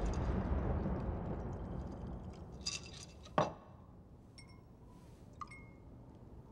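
Glass cocktail shaker and martini glass handled: a scatter of clinks, a sharp knock about three and a half seconds in, then two small ringing glass pings. Early on, the tail of a deep boom from the score dies away beneath them.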